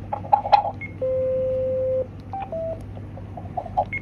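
TETRA radio handsets beeping as a call is keyed up: a few button clicks and short beeps, then one steady low tone lasting about a second, followed by a couple of short, slightly higher beeps.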